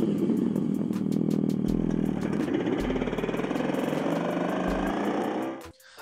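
Artificial motorcycle engine sound played by the Revolt RV400 electric motorcycle's selectable bike-sound feature, revving with pitch rising and falling, over music. It cuts off suddenly near the end.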